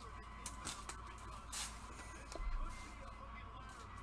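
Faint rustles and light clicks of a trading card being handled in nitrile-gloved hands against a clear plastic holder, over a steady low hum, with a soft bump a little past halfway.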